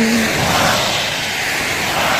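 A vehicle passing on a wet road: a swell of tyre hiss and spray that peaks about half a second in and slowly fades.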